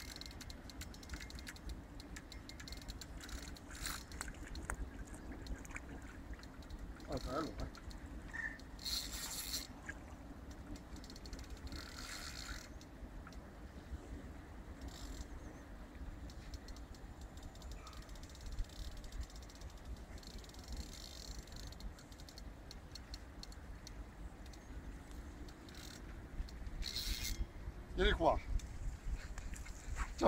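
Spinning reel working in several short spells while a large Wels catfish pulls on the bent rod, under a constant low wind rumble. A short voice sound comes near the end.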